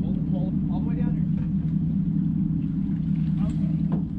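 Sportfishing boat's engine running steadily under way, a constant low drone.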